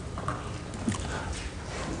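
Lecture-hall room noise: a steady low hum with a few light knocks and clicks about a second in.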